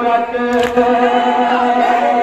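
Group of men chanting a noha in unison on one long held note, with a single sharp slap about half a second in: hands striking chests in matam.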